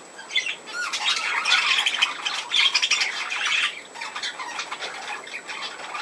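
Budgerigars chattering, a dense run of fast chirps that is busiest for the first few seconds and then quieter.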